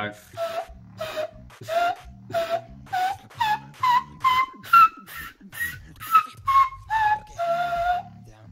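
Beatboxer's laser whistle, a mouth whistle blown through a tiny gap between the top lip and the tongue, sounded as a run of short zaps at about two a second. Each zap opens with a quick drop in pitch. The zaps step higher through the first half and lower again after, ending on one longer held whistle.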